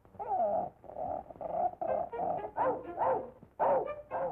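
Cartoon voices vocalising without words in a quick run of short pitched notes and sliding yelps, with musical accompaniment, on a thin early-1930s soundtrack.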